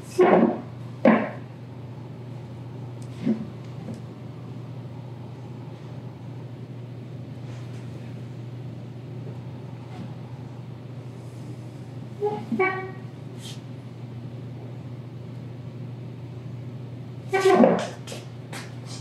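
Electric pottery wheel motor humming steadily, with a few brief vocal sounds and a short laugh about twelve seconds in.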